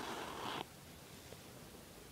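A brief rustle, about half a second long, of embroidery fabric and thread being handled.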